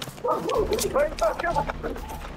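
A dog barking repeatedly in short, quick barks.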